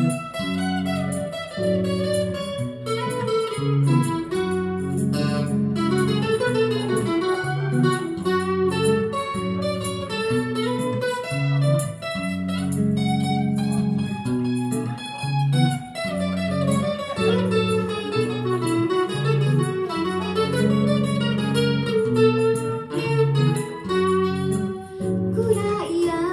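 Live band instrumental passage: electric and acoustic guitars playing together over a moving bass line, with no vocals.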